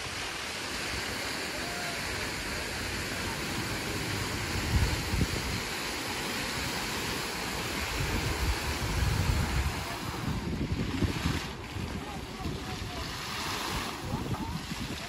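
Steady rushing splash of many fountain jets falling back into a shallow pool, with gusts of wind rumbling on the microphone now and then.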